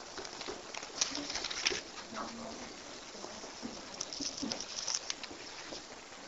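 Faint rustling and light tapping of Bible pages being leafed through at a wooden pulpit, with a few brief low tones in between.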